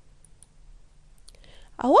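A quiet pause with a faint low room hum and a few faint, scattered clicks. A woman's voice begins speaking near the end.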